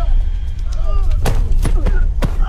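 Film fight-scene sound effects: three sharp hits in the second half over a heavy low rumble, with short shouts in between.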